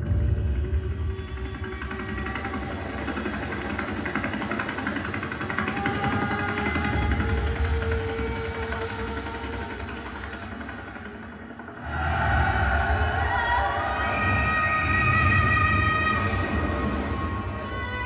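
Film trailer soundtrack: dramatic music over a heavy low rumble that starts suddenly, eases off about ten seconds in, then swells again about twelve seconds in with long held high notes.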